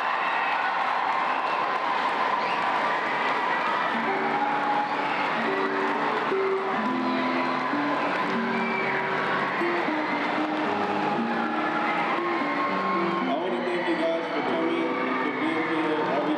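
A gymnasium crowd of schoolchildren cheering and chattering, with music playing a melody of held notes from about four seconds in.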